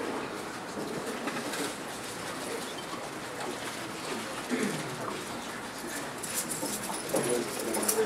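Faint, indistinct voice of someone in the room talking away from the microphone, over steady room noise.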